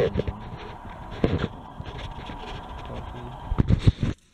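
Handheld camera being moved and handled: a few sharp bumps and rustles, the loudest cluster near the end, over a faint steady tone.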